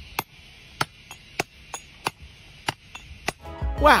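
A hand hammer strikes a steel chisel held on a stone tile to split it by hand: about nine sharp strikes at an uneven pace.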